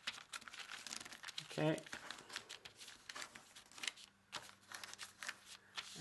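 Sheet of kami origami paper rustling and crackling as its flaps are folded down and creased flat by hand: a quick, uneven run of small crackles, with a brief lull about four seconds in.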